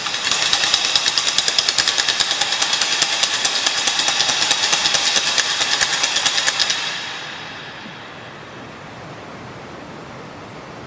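Wooden clapper (matraca) rattled in a rapid, loud run of clacks for about seven seconds, then dying away in the church's reverberation. It marks the elevation of the consecrated host, standing in for the altar bells, which are silent on Holy Thursday.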